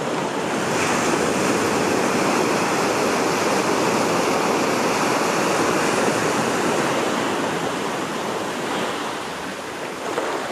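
Small waves breaking and washing up a sandy beach, the surf swelling about a second in and easing off near the end.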